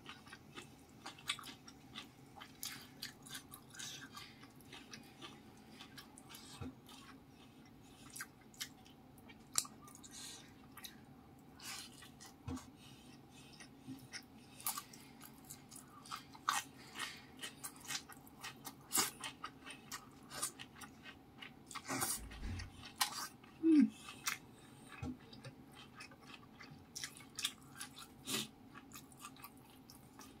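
Close-up chewing of mouthfuls of rice, fish and stir-fried leafy greens, with many short wet clicks and crunches. A little past the middle come a low thump and a brief low sound dipping in pitch, the loudest moment.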